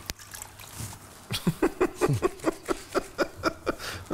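Cloth diapers being kneaded and scrubbed by hand in water in a plastic washing bowl: quick, rhythmic squishing and sloshing, about five strokes a second, starting a little past the first second.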